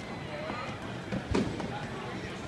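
A basketball thumping twice on a hardwood court a little over a second in, the second bounce the louder, over low background chatter.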